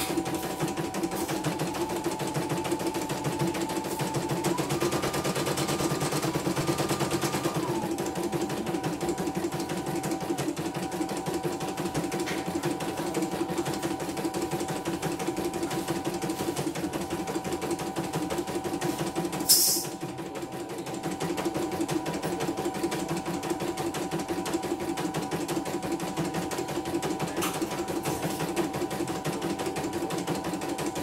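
Computerized embroidery machine stitching a design: a fast, steady needle rhythm under a motor whine that steps up in pitch and back down in the first seconds as the hoop moves. About two-thirds of the way through, a short sharp hiss cuts in, the loudest sound, then the stitching carries on.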